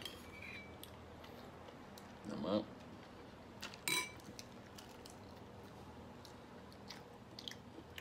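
Faint, scattered clicks and crackles of shell being picked off boiled balut duck eggs by hand. A short groan comes about two seconds in, and a sharper tap with a brief ring near four seconds.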